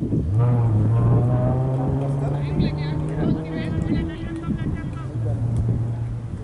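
An engine running at a steady, unchanging pitch, dropping out for about half a second near the end and then starting again.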